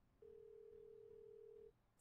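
Faint telephone ringing tone on the line, heard through the handset while the call waits to be answered: one steady single-pitch tone about a second and a half long.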